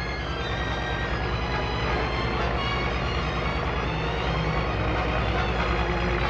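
Steady low engine drone of construction machinery at a building site, with music playing over it.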